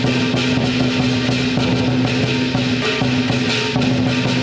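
Traditional lion dance percussion: a large lion dance drum beaten in quick strokes with clashing hand cymbals, over a steady ringing tone underneath.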